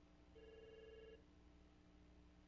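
A single faint electronic beep, just under a second long and slightly warbling, against near silence with a low steady hum.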